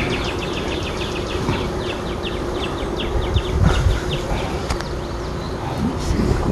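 Honeybees buzzing around an open hive, a steady hum. Behind it runs a rapid high chirping, about six pulses a second, that fades out about two-thirds of the way through, over a low wind rumble on the microphone.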